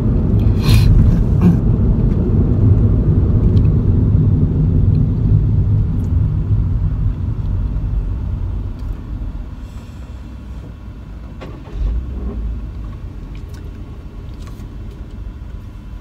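Road and engine noise inside a moving car's cabin: a steady low rumble, louder for the first half, then quieter. One short thump comes about three-quarters of the way through.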